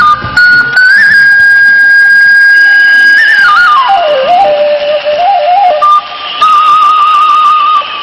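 Thai khlui (vertical bamboo duct flute) playing a solo melody: a long high note held for about two seconds, then a falling run with quick ornaments, then a held note with a trill near the end. These are the closing phrases of a tune.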